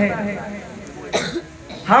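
A short cough from the speaker at the podium microphone, about a second in, during a pause in his speech, followed by a quick breath just before he speaks again.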